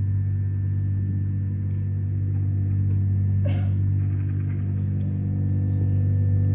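Low, steady musical drone of several deep sustained tones layered together, holding level; a faint brief rustle about three and a half seconds in.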